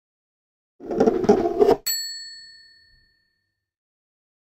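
A short noisy rush, then a single bright bell-like ding that rings and fades over about a second.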